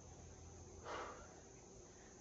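Quiet room tone with a faint steady hum, and one soft breath out about a second in.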